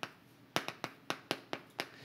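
Chalk tapping against a chalkboard while writing: one sharp tap right at the start, then a quick run of about seven more from about half a second in.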